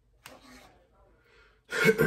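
A man clearing his throat near the end, a sudden loud rasp, after a faint click and rustle early on as he picks at the food.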